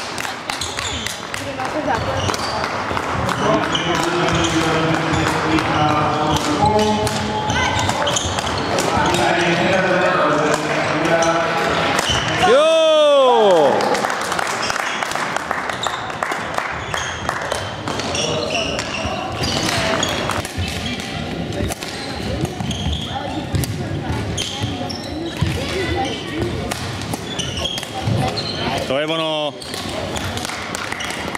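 Badminton played in a sports hall: sharp racket hits on the shuttlecock and shoes on the wooden court floor, over a steady chatter of voices. The loudest sound is a falling-pitched squeal about 13 seconds in, heard again near the end.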